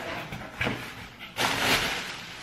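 Plastic air-pillow packing rustling and crinkling as it is pulled out of a cardboard shipping box, loudest near the end.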